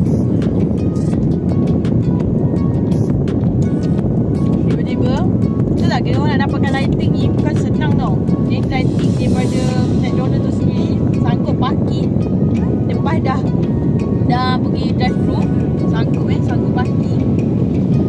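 Car air-conditioning blower running loud and steady, a dense rushing noise that fills the low end throughout.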